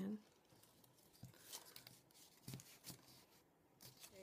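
Faint handling of textured cardstock being pressed and fitted together by hand: a few light taps and rustles.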